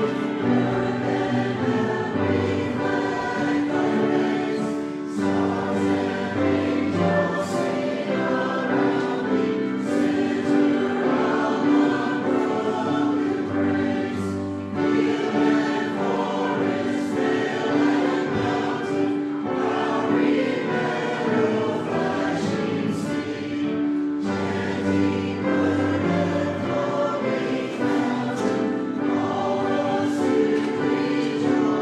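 Church choir and congregation singing a hymn together in phrases, over held low accompaniment notes.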